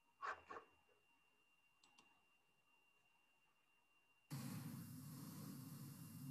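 Near silence with a faint steady high whine and a couple of brief soft clicks. A bit past four seconds in, a steady hiss with a low hum switches on abruptly: the background noise of the comedian's video starting to play.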